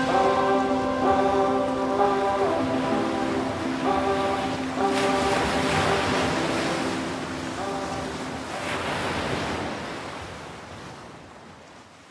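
Ocean waves washing onto a beach, with two swells of surf about five and nine seconds in, under the last held notes of soft music; both fade away near the end.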